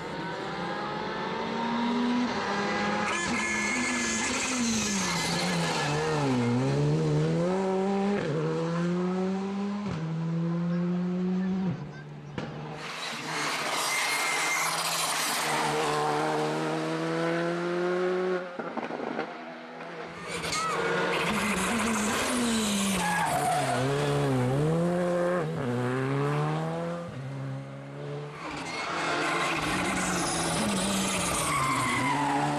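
Škoda Fabia R5 rally cars, one pass after another, each engine's revs dropping as the car slows and shifts down for a corner, then climbing in steps through the gears as it accelerates away. The sound changes abruptly twice between passes.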